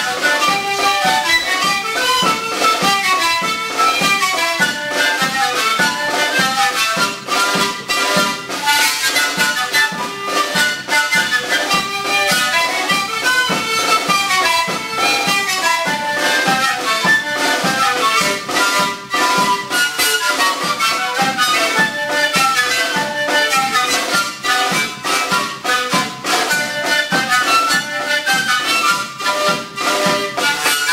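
Several sikus, Andean cane panpipes, played together in a continuous traditional melody of short breathy notes.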